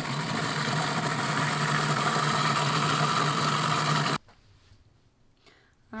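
Cuisinart food processor motor running steadily while it purées chickpeas into hummus. It stops abruptly about four seconds in.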